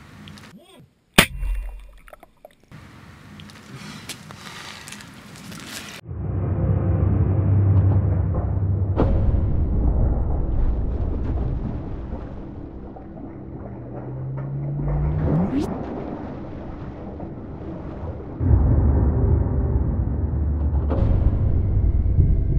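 A single sharp bang from a 9 mm pistol fired underwater, a little over a second in. From about six seconds a low, deep, droning soundtrack takes over, with a rising sweep near fifteen seconds.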